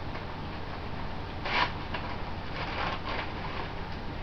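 Stiff paper wrapper of a sterile glove packet being unfolded and pulled open: a sharp crinkle about a second and a half in, then a run of softer rustles.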